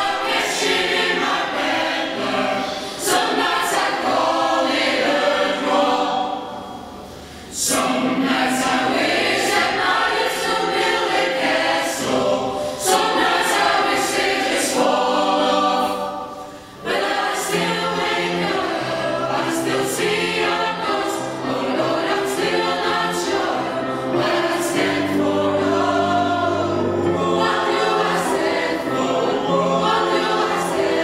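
A male soloist singing with a mixed choir, the choir holding chords beneath his line. The singing drops away briefly twice, about seven and sixteen seconds in.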